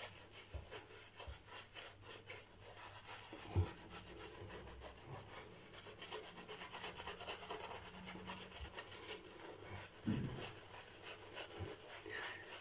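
Shaving brush face-lathering Derby shaving-stick soap on stubbled skin: a faint, rapid, continuous rubbing and scratching of bristles, with a light bump about three and a half seconds in.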